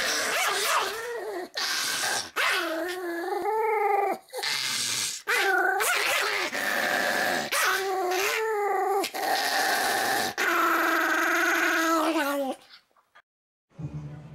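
Pomeranian dog growling and yapping in long bouts that waver in pitch, with short breaks between them. It stops shortly before the end.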